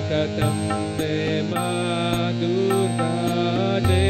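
Harmonium playing sustained chords under a man's chanted devotional melody, with a steady percussion beat about every half second.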